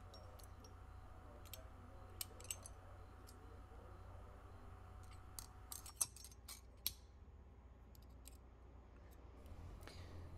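Faint, scattered small metallic clicks and taps from the thin steel valve rings, pick tool and valve body of a Gardner Denver air-compressor discharge valve being handled and fitted together, the sharpest about six and seven seconds in. A low steady hum lies underneath.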